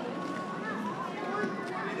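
Spectators talking in the background, several voices overlapping, with a few faint clicks; one voice starts a sentence near the end.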